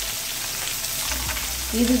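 Small masala-coated fish shallow-frying in a little oil on a flat iron tawa: a steady sizzle. A voice begins near the end.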